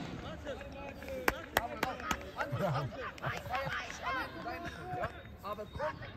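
Scattered shouts and calls of youth footballers and sideline spectators, with two sharp knocks of a football being struck about a second and a half in.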